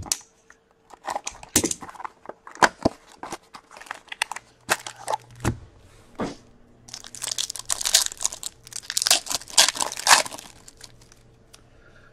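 Plastic and foil packaging of a box of hockey card packs crinkling and rustling as the box is opened and the packs handled, with scattered light clicks and taps. From about 7 to 10 seconds in comes a denser, louder run of crinkling and tearing as a foil pack is torn open.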